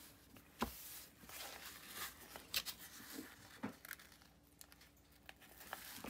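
Faint, scattered crinkles and small ticks of a diamond painting canvas's glossy plastic cover film being handled and pressed flat by hand.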